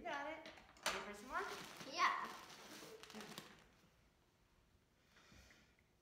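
A child's high voice for the first three seconds or so, sliding up and down in pitch without clear words, then near quiet with a faint brief hiss.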